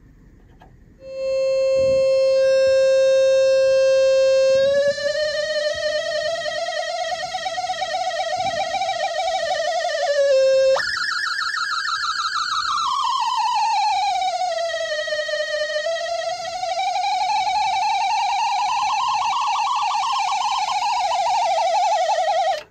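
Synthesizer oscillator's square wave: a buzzy tone that starts about a second in and holds one steady pitch for a few seconds. Then its pitch is modulated by the fidget-spinner LFO through an envelope follower. It wavers, jumps up sharply near the middle, and sweeps slowly down and back up with a fast warble.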